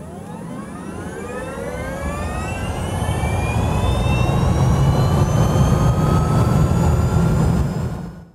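Intro sound effect: a whine that keeps rising in pitch over a heavy low rumble, growing louder like an engine or turbine spooling up, then cutting off suddenly at the end.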